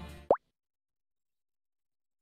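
The advert's voice and music fade out, then a single short rising 'plop' sound effect sounds about a third of a second in. The rest is dead silence.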